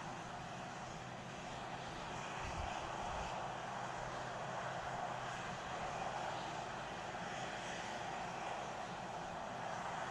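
Steady rushing hiss of gas venting at the launch pad, swelling and easing a little, over a faint steady low hum.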